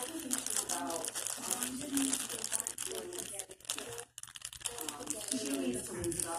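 Close rustling and crinkling near the microphone, with people talking quietly underneath.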